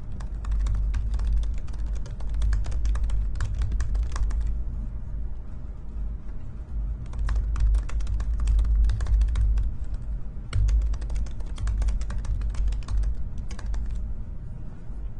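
Typing on a computer keyboard in quick bursts of keystrokes, with a pause of a couple of seconds between the first and second bursts. A low rumble runs underneath.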